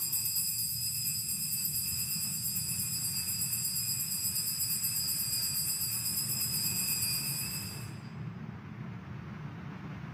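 Hand-held altar bells rung continuously for the elevation of the chalice at the consecration of the Mass, a steady high ringing that stops about eight seconds in.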